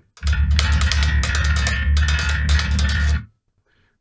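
Electric bass, a low note on the B string plucked hard and repeatedly, with a clanky attack on each stroke over a deep fundamental. It cuts off abruptly a little after three seconds in. Even played hard, the string gives less aggression than the lighter, detuned string did.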